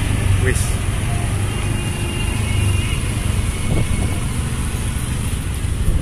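A vehicle's engine running at low speed with road noise, heard from the moving vehicle as a steady low rumble.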